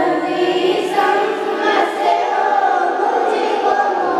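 Voices singing an Urdu devotional salaam in chorus, in sustained, gliding melodic lines.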